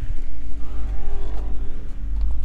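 Low rumble of wind buffeting the microphone, with a faint steady hum underneath, as the mini excavator's cab door is swung open.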